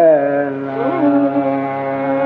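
Carnatic classical music: an ornamented melodic line with sliding pitch bends settles into a long held note about half a second in, with a brief flick of pitch about a second in. It sounds over a steady drone, with no drum strokes.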